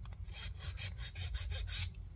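Hand file scraping along the edge of a wooden bellows block in quick, short, repeated strokes, taking off old hot hide glue buildup.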